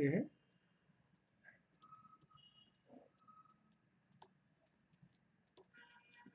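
Faint, irregular clicks and light taps of a stylus on a writing tablet as handwriting is entered.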